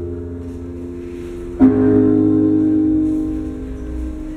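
Slow music with sustained chords for a partner dance: a new chord sounds about one and a half seconds in and slowly fades.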